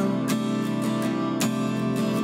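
Song's instrumental music between sung lines: strummed acoustic guitar chords, a few strokes ringing on, with no singing.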